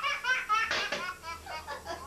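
A toddler laughing hard: a quick run of short, high-pitched laughs, loudest in the first second and easing off after.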